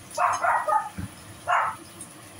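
A dog barking: a quick run of barks at the start, then a single bark about a second and a half in.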